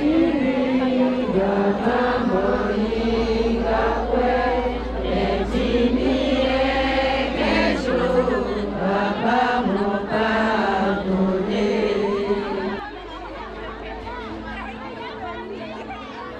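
A group of voices singing a chant together, one repeating tune with held notes, which stops about 13 seconds in and leaves quieter crowd chatter.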